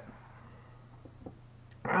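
Mostly quiet room tone with a faint steady low hum and two small faint clicks about a second in, then a man's voice starting near the end.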